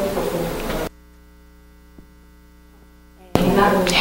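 Steady electrical mains hum on the audio line. A hiss in the first second cuts off suddenly, leaving only the low hum with one faint click midway, and the hiss returns shortly before the end.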